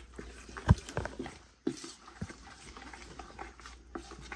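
Spatula stirring thick, wet puppy mush on a plate, with a few short knocks, the loudest about a second in.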